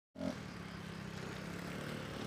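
A road vehicle's engine running with a steady low hum.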